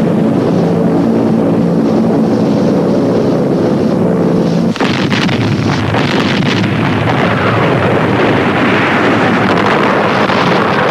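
Steady engine drone of armoured river boats under way. About five seconds in it cuts abruptly to a dense rumbling noise with several sharp cracks: battle sound of guns firing and shells exploding.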